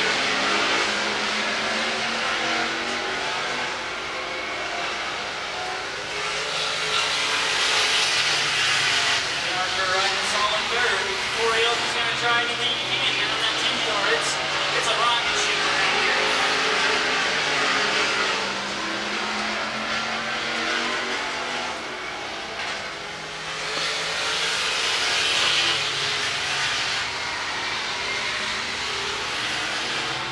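Stock car race engines running at speed around an oval track. The sound swells twice as the cars come past.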